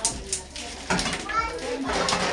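Children's voices chattering in the background. Near the start there are a couple of sharp clicks as a gas cooker burner is lit.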